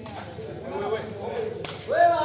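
A single sharp crack of a sepak takraw ball being kicked, about three-quarters of the way in, over spectators' voices.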